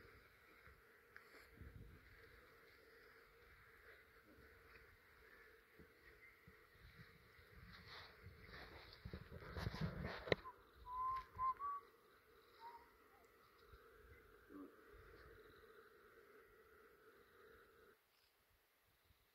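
Faint steady hum of a mass of honey bees on and around a nucleus hive box, just tipped in from a cutout. About ten seconds in there is a brief rustle ending in a sharp knock, followed by a few short bird chirps.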